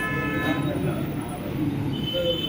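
Background chatter of several men talking, with a vehicle horn held steadily that stops about half a second in.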